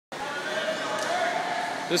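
Steady, echoing background noise of an indoor swimming pool hall, with faint distant voices. A man's voice starts right at the end.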